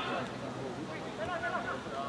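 Faint, distant voices calling out from players and spectators during a football match, over low outdoor background noise.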